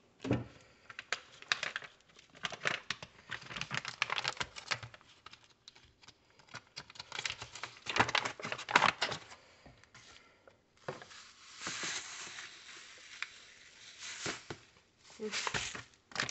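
Paper crinkling and rustling with scattered clicks and knocks as a paper coffee filter and the parts of a drip coffee maker are handled. About eleven seconds in, a softer continuous rustle lasts a few seconds.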